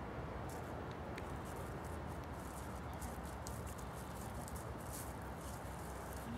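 Scattered soft footsteps of people, dog and sheep on grass and dry leaves, over a steady low outdoor background noise.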